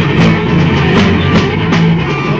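Live band playing an instrumental passage with guitar and drums keeping a steady beat.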